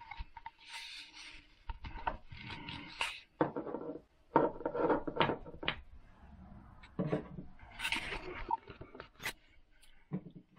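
Scattered clicks, knocks and rubbing as small glass and plastic bottles are handled at a sink, with a few short hissy rushes between them.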